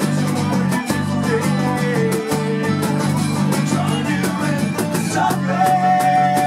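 Live acoustic folk-punk band playing: strummed acoustic guitar, bass guitar and a cajon keeping a steady beat, with a held melody line, likely from the accordion.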